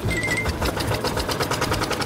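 Single-cylinder diesel engine of a walk-behind power tiller (경운기) running with a rapid, even firing beat as it pulls off with its trailer.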